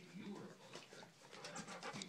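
Rottweiler puppies playing in a crate lined with newspaper: faint dog vocal sounds, then quick clicks and rustles of paws on newspaper near the end.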